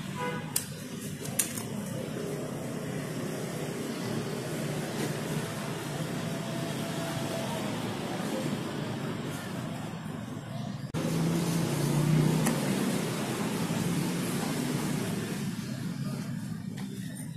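A steady motor-vehicle rumble in the background. Two sharp clicks near the start come from scissors snipping the cardboard bracket template. The rumble grows louder after an abrupt change about eleven seconds in.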